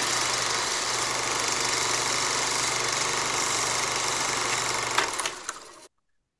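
Film-projector running sound effect: a steady mechanical running noise with a low hum, cutting in suddenly and fading out after about five seconds.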